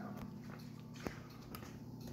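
Quiet room tone with a steady low hum and a single faint click about a second in.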